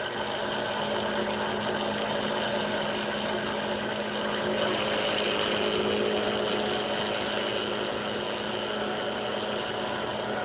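Benchtop drill press motor running steadily while its bit, fed very slowly, cuts a shallow divot into the threads of a steel bolt. The cutting gets a little louder and brighter about halfway through.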